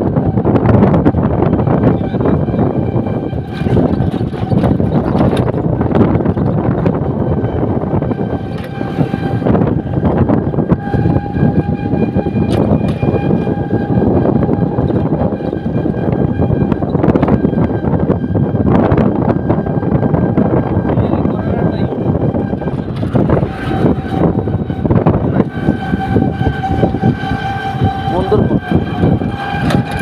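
Running noise of a road vehicle heard from on board, rattling and jolting continuously as it drives over a rough road. A steady high whine with overtones comes and goes above the rumble, held for several seconds at a time about a third of the way in and again near the end.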